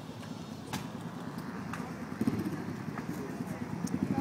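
An engine running with a rapid, even low pulse, getting louder about halfway through, under voices in the background. A few sharp clicks in the first half.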